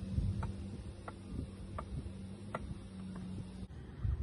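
A tennis ball bounced repeatedly off the strings of a tennis racquet, a light tap about every 0.7 seconds. A low steady hum runs underneath and cuts off shortly before the end.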